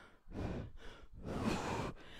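A woman breathing hard through an exercise set, picked up close by a clip-on microphone: two long breaths, one after the other.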